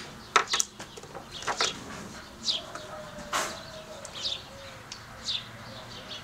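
A songbird repeating a short, high, falling chirp about once a second, with a few sharp clicks from cosmetics packaging being handled, mostly in the first two seconds.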